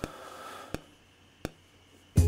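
A short break in the beat: faint hiss, then two light clicks about two-thirds of a second apart, then near silence.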